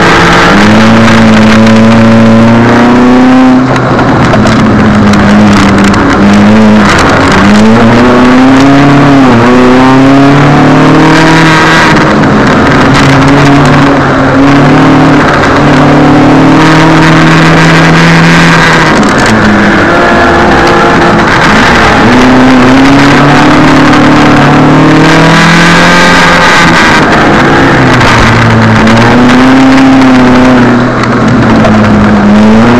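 Proton Satria Neo's four-cylinder engine heard from inside the cabin under hard track driving, its note climbing as it revs out and then dropping sharply several times at gear changes and lifts for corners, over steady road and wet-tyre noise. The owner reports worn spark plugs and heavy spark knock in this engine.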